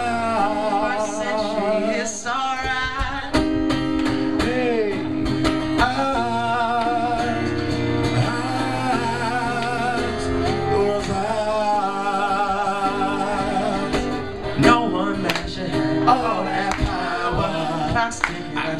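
Live acoustic music: a male voice singing long, wavering melodic lines over a strummed acoustic guitar.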